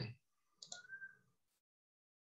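Near silence: the tail of a man's word fades out at the start, a faint brief sound comes about half a second later, and then the audio drops to dead silence.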